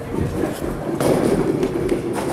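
A 6 lb bowling ball released onto the wooden lane, landing with a knock about a second in and then rolling away with a steady rumble.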